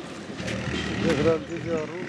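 Speech: a voice saying the name "Arun", over a faint steady low hum.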